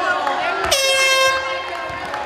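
A single loud horn blast: one steady, unwavering tone lasting a little over half a second, amid crowd voices and cheering.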